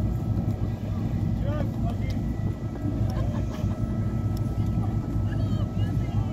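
Motor yacht's engines idling with a steady low rumble, with faint distant voices calling over it.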